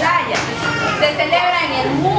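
A woman's voice addressing a group, with children's voices in the room around her.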